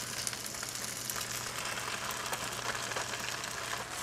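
Noodles and vegetables sizzling in a hot wok: a steady low sizzle with a few faint crackles.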